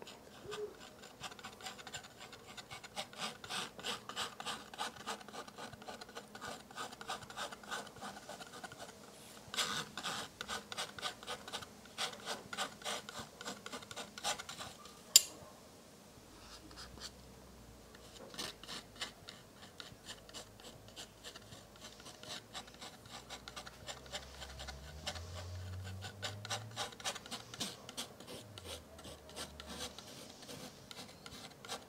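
Steel palette knife scraping and dragging oil paint thin across a canvas panel in quick, repeated strokes. A single sharp tap comes about halfway through, followed by a short pause before the scraping resumes.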